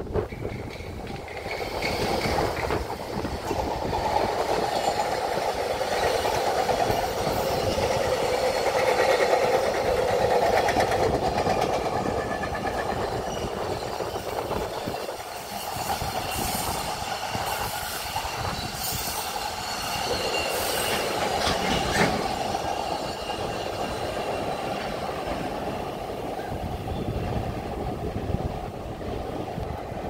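JR Freight EF210 electric locomotive and a long rake of Koki container flatcars rolling past, wheels clattering over the rail joints. The noise builds to its loudest about ten seconds in and then eases off as the wagons go by, with faint high wheel squeals in the middle and one sharp click near the end.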